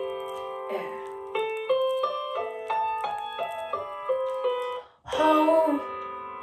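A piano-style keyboard playing the instrumental intro of a song, a melody of single ringing notes about three a second. Just before five seconds it cuts off suddenly, and a louder, fuller passage with a wavering voice comes in.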